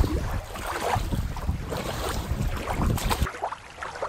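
Wind buffeting the microphone over small waves lapping in shallow water at the shore, cutting off abruptly about three seconds in.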